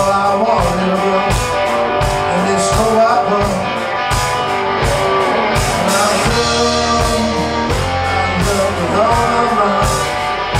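Live blues-rock song: electric guitar played over a steady drum beat, with a man singing.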